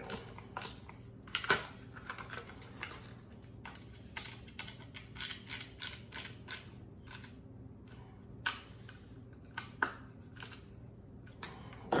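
Irregular clicks and scrapes of a hard Kydex plastic holster being handled and flexed open while its mounting screws are tightened, with a few sharper clicks.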